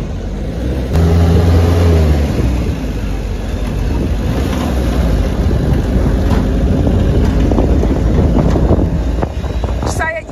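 Vehicle engine and road noise heard from the open bed of a moving pickup truck, with wind buffeting the microphone. The engine note swells loud for about a second near the start, then settles into a steady rumble.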